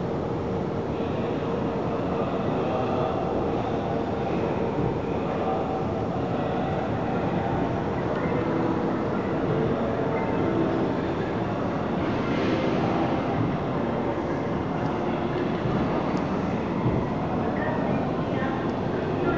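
Steady rumble and hum of trains echoing through a large station platform hall, with a few pitched tones drifting over it as an electric locomotive-hauled train approaches from far down the track.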